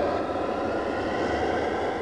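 A steady rushing, rumbling noise swell, like a whoosh or jet-like sound effect used as a transition, that gives way to rock music with drums at the very end.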